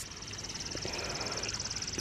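A bird's single high, very fast dry trill, lasting about two seconds, over faint outdoor background.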